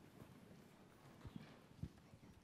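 Near silence: room tone with a few faint low knocks, about a second in and again near the end, from people moving about and getting to their feet.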